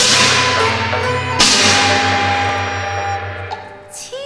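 Cantonese opera instrumental ensemble playing: two loud percussion crashes, one at the start and one about a second and a half in, each ringing out and fading over a steady low sustained tone, with the music dying down near the end.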